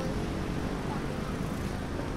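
Steady low rumble of outdoor background ambience, like distant traffic.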